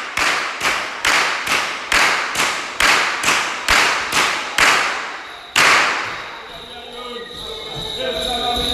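A whip cracking over and over in a quick, even rhythm, about two cracks a second, each echoing in a large hall, with a pause and then one louder crack about five and a half seconds in.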